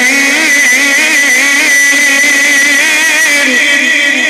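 A man reciting the Quran in melodic maqam style into a microphone, holding one long ornamented note whose pitch wavers up and down without a break.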